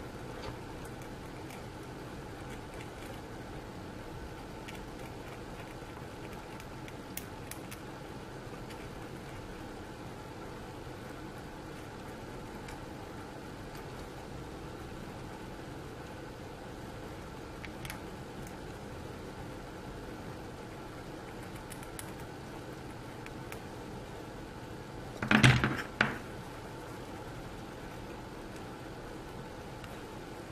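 Faint small scrapes and ticks of a hobby knife blade shaving flash off a metal miniature, over a steady low room hum. A short loud burst comes near the end.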